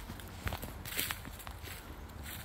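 Footsteps on dry fallen leaves and pine needles at a walking pace, about two steps a second.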